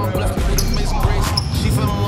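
Hip hop music with a steady beat.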